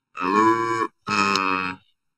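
A man's speaking voice, heavily altered or distorted over a video call, in two drawn-out stretches of about a second each. It is so altered that it comes across as sustained tones more than clear words.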